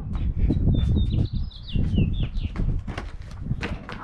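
A bird calls a quick run of high chirps that falls in pitch toward its end, lasting about two seconds, over a low rumble and scattered knocks.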